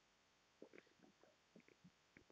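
Near silence, with a run of faint short rubbing sounds from about half a second in: a duster wiping marker off a whiteboard.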